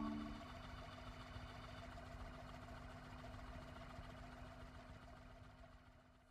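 The final sustained keyboard chord dies away in the first half-second, leaving a faint hiss with a low steady hum that fades out to silence at the very end.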